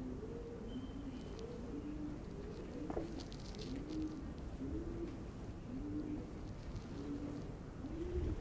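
Pigeons cooing, low rounded coos repeating about twice a second at a higher and a lower pitch, with a brief knock about three seconds in.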